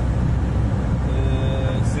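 Steady low rumble of a moving car, road and engine noise heard inside the cabin, with a drawn-out hesitant "eee" from one of the occupants about a second in.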